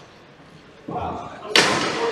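Ball hockey play in a gymnasium: a duller knock about a second in, then a loud, sharp crack about half a second later that echoes through the hall.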